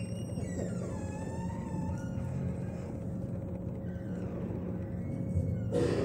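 Faint steady hum with soft sustained tones, which glide downward in the first second and then hold.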